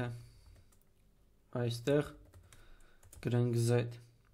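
Typing on a computer keyboard in short spurts, with a voice speaking in two brief stretches, the longer one near the end.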